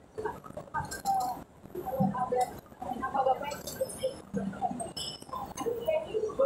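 Indistinct voices of several people close by, in short broken murmured phrases.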